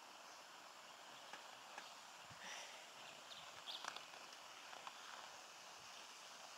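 Near silence: faint outdoor background hiss, with a few short, faint bird chirps in the middle.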